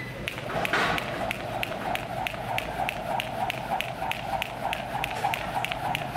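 Jump rope skipping on a gym floor: evenly spaced taps of the rope and feet, about three a second, over a steady hum.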